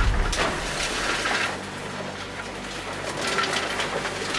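Opal-mining digger running underground with a steady hum, a heavy low rumble at the start, then its head scraping and grinding into the rock wall with crackling, crumbling strokes.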